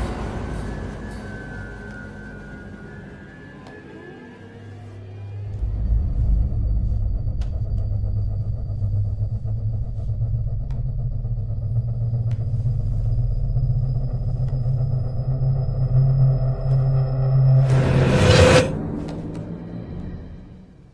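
Horror film score: a low droning rumble swells in about five seconds in and holds under a thin high whine. It ends in a loud swelling hit about eighteen seconds in, then fades.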